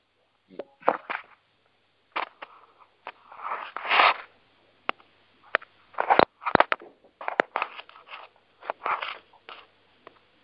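An open telephone conference line carrying scattered clicks, crackles and short bursts of noise with no clear speech. A longer stretch of noise comes about four seconds in.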